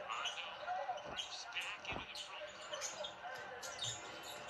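Basketball bouncing on a hardwood court, with two clear bounces about a second apart near the middle, amid short high sneaker squeaks.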